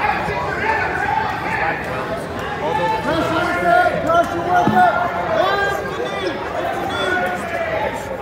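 Several voices calling out at once, indistinct, echoing in a large gym, growing louder in the middle.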